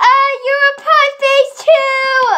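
A young girl's voice singing one long, loud high note that wavers slightly in pitch. It starts abruptly.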